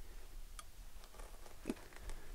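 A quiet pause with faint background rumble and a few faint, thin clicks, one about half a second in and another near the end.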